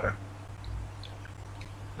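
A pause between spoken passages: a steady low hum with faint hiss underneath.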